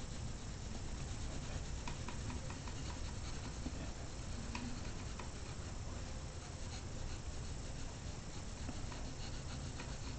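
Graphite pencil shading on drawing paper: a faint, soft scratching with scattered light ticks, over a low steady hum.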